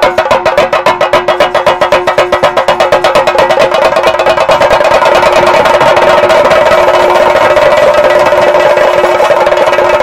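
Temple drums, typical of the chenda ensemble that accompanies theyyam, played in a fast continuous roll with a steady held tone running through it. The beat pulses at first and evens out into a steady roll after about four seconds.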